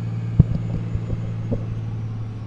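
Steady low drone of a vehicle cabin on the move, engine and road noise, with a few short low thumps, the strongest about half a second in.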